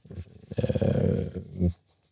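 A man's voice in a low, creaky, drawn-out hesitation sound lasting about a second, followed by a short breath.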